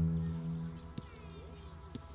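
Acoustic guitar chord ringing out and fading, followed by a couple of soft plucked notes. Crickets chirp faintly about twice a second underneath.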